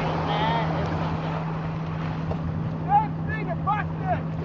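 Motorboat engine running at a steady speed with a constant low hum, over the rushing wash of its wake water.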